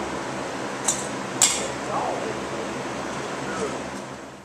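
Steady background noise with faint, indistinct voices and two sharp clicks, about a second in and half a second apart.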